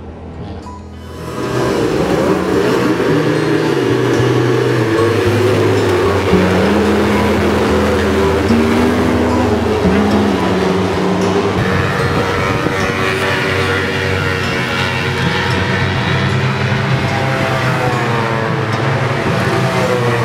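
Racing motorcycle engine running on a circuit, mixed with background music; both come in loud about a second and a half in and hold steady.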